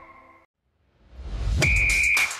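Broadcast bumper music fading out, a moment of silence, then a rising whoosh that opens an electronic intro jingle, with a steady high beep-like tone and sharp hits near the end.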